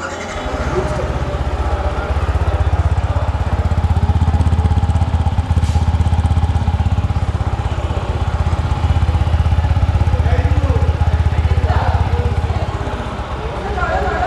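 Yamaha MT-15 V2.0's 155 cc single-cylinder engine starting up and then idling steadily, its exhaust note heard close to the silencer.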